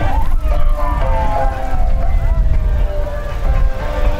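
A siren sounding, its pitch falling slowly over about three seconds, over background music and a low wind rumble.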